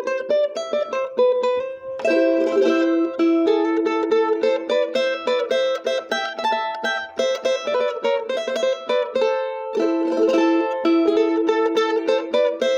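Charango played with the fingers: a quick, steady stream of plucked notes carrying a huayno melody in A minor, picked in two-note lines, with fuller phrase entries about two seconds in and again near ten seconds.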